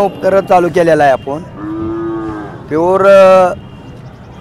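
Cattle mooing: a few drawn-out moos, one lower and steady, the loudest about three seconds in.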